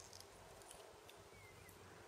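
Near silence: room tone with a few faint ticks from hands handling tatting thread and a small hook.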